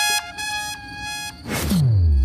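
Background score: sustained high notes that die down, then a falling swoosh effect near the end that drops into a low bass rumble.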